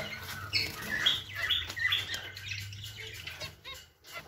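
Zebra finches in a cage giving short chirping calls, about two a second, several birds overlapping.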